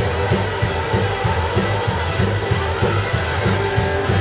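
Live rockabilly band playing: electric and acoustic guitars strummed over an upright bass and drum kit, with a steady pulsing bass line.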